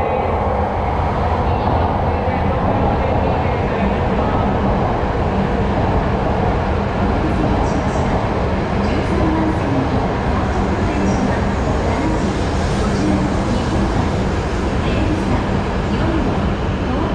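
E5 series Shinkansen train pulling slowly into the platform: the steady noise of the running train, with a low, even hum underneath.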